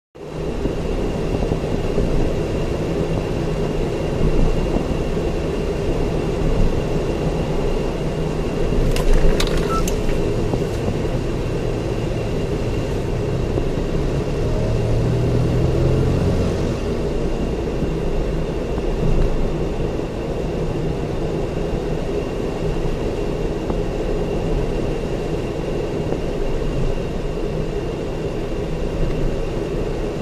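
Steady road noise of a car driving on an expressway: continuous tyre and engine rumble with a faint steady high tone. A few sharp clicks come about nine to ten seconds in.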